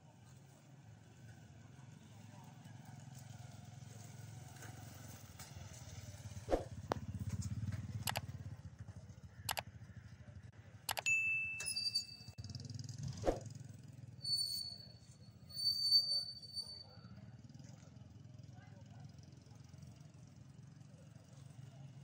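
A run of sharp mouse-click sounds followed by short electronic chimes and a bell-like ding: the sound effects of an animated like-and-subscribe reminder. They sit over a steady low outdoor rumble.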